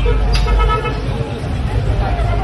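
Street sound with a vehicle engine running low and a brief vehicle-horn toot about half a second in, over people's voices.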